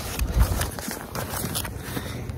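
Jacket fabric and paper lottery slips rustling as they are pulled from a pocket, close to the microphone, with scattered small clicks and a low thump about half a second in.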